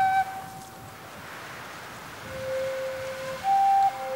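A solo flute playing slow single notes in documentary background music. A held note ends just after the start, then a soft breathy stretch, a lower note past the middle, and a higher, louder note near the end.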